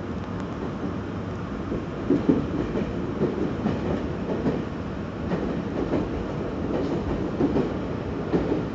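Running noise of a Meitetsu electric train heard from inside the passenger car: a steady rumble of wheels on rail with irregular clacks and knocks as the wheels pass over rail joints.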